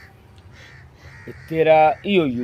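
A single short, loud call lasting just under half a second, about one and a half seconds in, after a quiet stretch.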